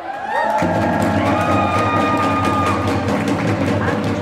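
A group of protesters singing in unison, with long held notes and crowd sound behind.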